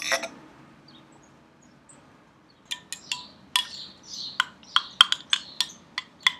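Kombucha poured quietly into a drinking glass, then a metal spoon stirring in the glass, clinking sharply against it many times over the last three seconds.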